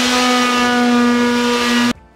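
Corded electric detail sander running at full speed against a wooden cabinet door, sanding off wood putty: a steady whine at one pitch over a hiss. It cuts off suddenly near the end.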